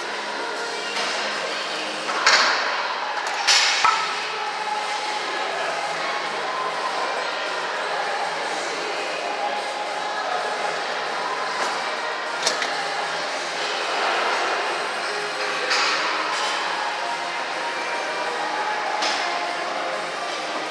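Gym ambience: a steady background din of voices in a large hall, with a few sharp metallic clanks from weight equipment, the loudest two a few seconds in and fainter ones later.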